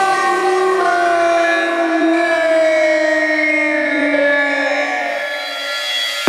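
Breakdown of an electronic dance track with the drums dropped out: a held, siren-like synth sound in several layered pitches drifts slowly and sinks in pitch toward the end.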